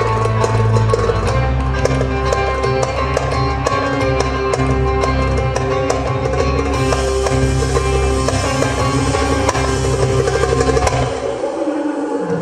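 Live band music: plucked electric saz over a heavy, steady bass and a regular percussion pulse. A bright cymbal wash comes in about seven seconds in, and the bass drops out near the end.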